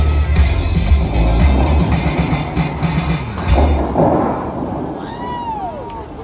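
Bellagio fountain show music playing over loudspeakers, with a heavy bass beat that stops about four seconds in as the song ends, over the rushing spray of the fountain jets. A short falling tone sounds near the end.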